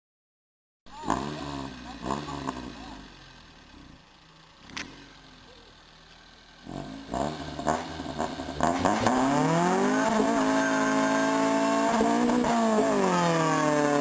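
Honda CRX engine revved in several short blips, then held at high revs from about nine seconds in as the front tyres spin in a standing burnout, with tyre noise over the engine. The revs sag briefly near the end and climb again.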